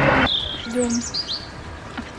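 Wind rushing on the microphone stops suddenly just after the start, then a small bird chirps a quick run of high, sliding notes.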